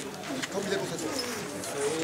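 A crowd of people talking at once in overlapping voices, with a few faint knocks.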